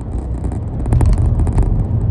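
A car on the move, heard from inside the cabin: a steady low rumble of road and engine that gets louder about a second in.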